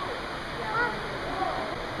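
Steady rush of running water from a large store aquarium, with faint voices of other people in the background.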